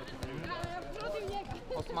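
Quiet talking with voices in the background, broken by scattered short thuds.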